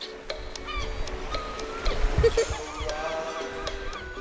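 Soundtrack of a television commercial: music with steady held notes and short sliding tones over a run of quick ticks, with no speech.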